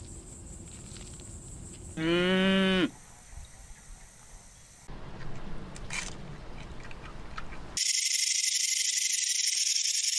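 A cow's short moo about two seconds in, lasting under a second. It is followed by softer noise with a few clicks and, near the end, a steady high hiss.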